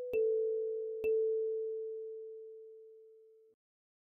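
Kalimba melody: two plucked notes on the same pitch, A4, about a second apart. The second note rings and fades until it cuts off suddenly near the end.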